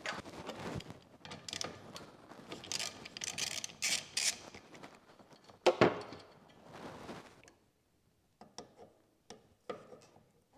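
Hand work on a car's windshield wiper arm and cowl: irregular rubbing and scraping, a sharp knock a little past halfway, then a few light clicks near the end.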